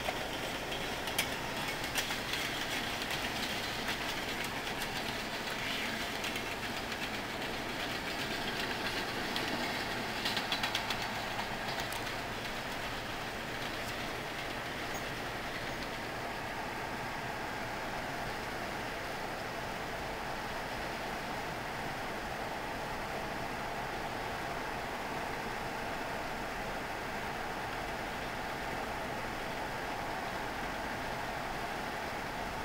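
Steady rolling noise of a freight train of covered hoppers and the pickup pacing it, heard from inside the moving cab. Scattered clicks come through over the first dozen seconds, then the noise evens out into a steady rush.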